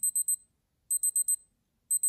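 Casio MRG-G1000 wristwatch's countdown-timer alarm chiming as the timer reaches zero: quick runs of rapid high-pitched beeps, about one run a second.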